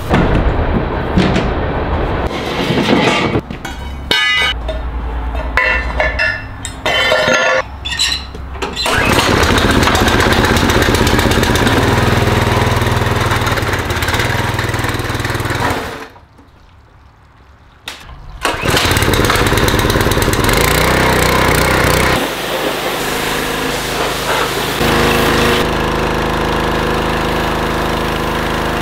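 A truck driving through tall dry grass for the first several seconds. Then a Powerhorse gas pressure washer's small engine runs steadily, with a short break of about two seconds near the middle.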